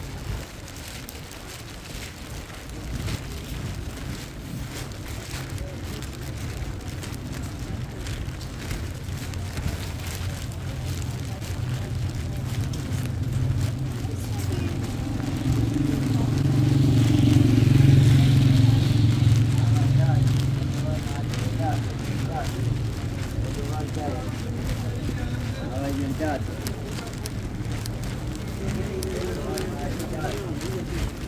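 Busy street ambience on a rain-wet city street: passers-by talking and traffic, with a vehicle passing close, swelling to loudest a little past the middle and fading again.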